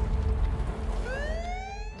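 Police car siren winding up about halfway through, a single rising wail, over a low steady rumble.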